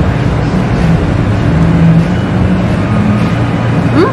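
Loud, steady low rumble of background noise with a faint hum in it, like machinery or traffic; no voices over it.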